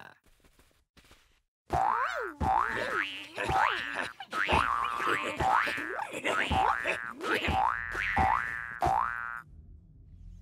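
Cartoon 'boing' spring sound effect, a rising twang repeated about twice a second; it begins about two seconds in and stops shortly before the end.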